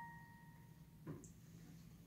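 The tail of a single B-flat note on a digital piano dying away over the first half second, then near silence with one faint soft knock about a second in.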